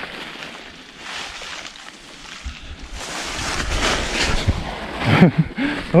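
Footsteps crunching and rustling through dry leaf litter, an uneven scuffing that grows louder after the first couple of seconds.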